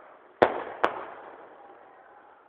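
Two sharp bangs about half a second apart, the first a little under half a second in, each trailing off in a long echoing tail.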